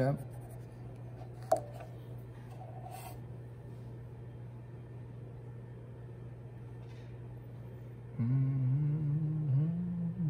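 A steady low electrical hum, with a single sharp tap about one and a half seconds in. Near the end comes a low hummed voice of a few held notes that step up and down in pitch.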